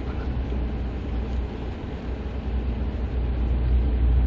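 Steady low rumble of a car's engine and road noise, heard from inside the cabin as the car moves slowly and turns.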